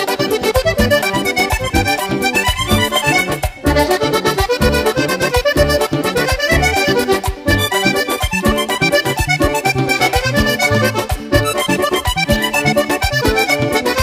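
Vallenato song, an accordion-led passage: a diatonic button accordion playing a melody over bass and percussion keeping a steady beat.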